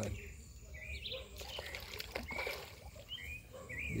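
Birds chirping: short, arching chirps repeated several times, over a low steady background rumble.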